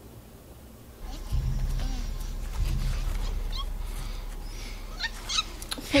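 Film soundtrack starting up about a second in: a steady low rumble with faint short ape calls over it.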